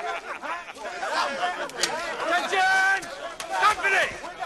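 Several men's voices talking and calling over one another, with one drawn-out shout about two and a half seconds in.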